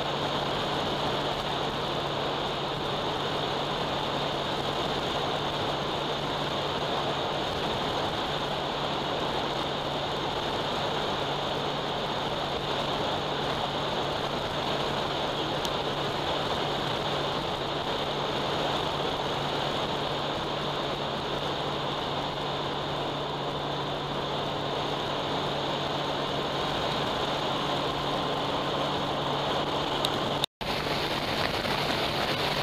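Steady wind rush and engine noise from a Honda Gold Wing motorcycle cruising at highway speed, with an even low drone under it.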